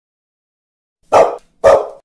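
A dog barking twice, two short loud barks about half a second apart, starting about a second in.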